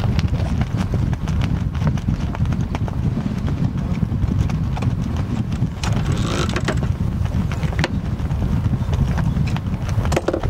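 Steady low rumble of wind buffeting the microphone, with scattered light clicks and knocks throughout.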